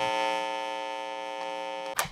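Channel logo sting: a single held electronic synth note with many overtones that slowly fades and cuts off abruptly at the end.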